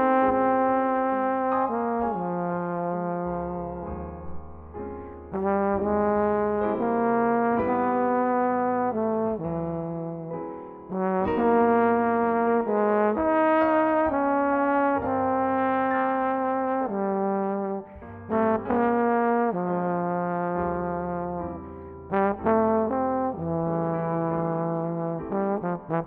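Jazz trombone playing a slow melody of long held notes, over soft low notes beneath.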